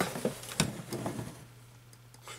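A cardboard product box being picked up and handled, with a few light knocks and rustles in the first second or so.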